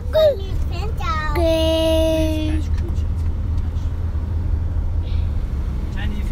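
A child's voice inside a car: a few short vocal sounds, then one steady sung note held for just over a second, all over the constant low rumble of the car cabin. For the last few seconds only the cabin rumble remains.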